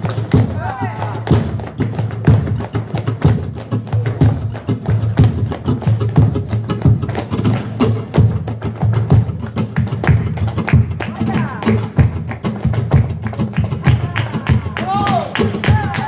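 Flamenco footwork (zapateado): heeled dance shoes striking a wooden floor in rapid rhythmic taps, over flamenco music.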